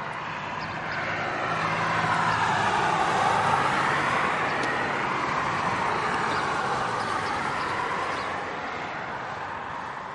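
A vehicle passing by: its noise swells to a peak about three to four seconds in, then slowly fades away.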